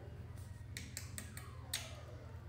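A handful of short, faint smacking clicks of a woman kissing a puppy on the nose.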